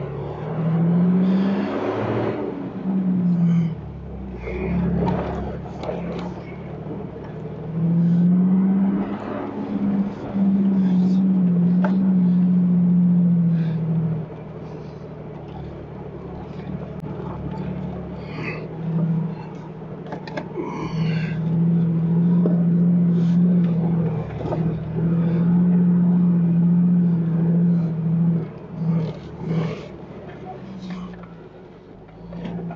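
Jeep engine running as it drives a rough dirt trail, its note gliding up and down with the throttle a few times and holding steady in long stretches, with scattered knocks and rattles.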